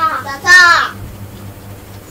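Children's voices reciting a Khmer consonant name, ស 'sa', with one loud, high-pitched, drawn-out call about half a second in.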